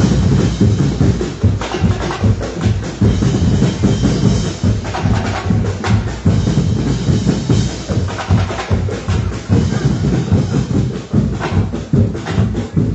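Music with a heavy drum and percussion beat, the bass drum strongest, playing throughout.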